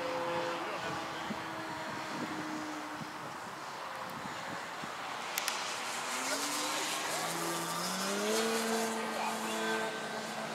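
Motor of a 70-inch 3DHS Slick radio-control aerobatic airplane heard in flight, its note steady at first, then climbing in pitch from about six seconds in.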